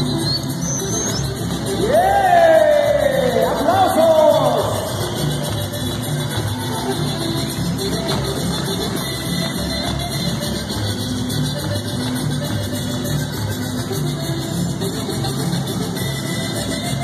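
Polka music with a steady beat playing for the dance. About two seconds in, loud gliding yells rise over it for a couple of seconds.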